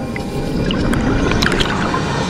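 Scuba diver's exhaled bubbles rushing and gurgling past the camera, a loud low rumble that swells with scattered pops about one and a half seconds in, over quieter background music.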